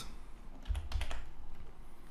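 Computer keyboard keystrokes: a few quick key clicks, most of them bunched together just under a second in.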